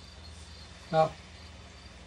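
Steady low hum and hiss under a faint, thin, high steady tone, with no distinct strokes or impacts.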